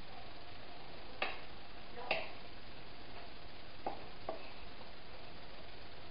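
Cooking utensil knocking against a skillet while shredded meat in sauce is stirred: four short clicks, two about a second apart, then a pause, then two more close together, over a steady soft hiss.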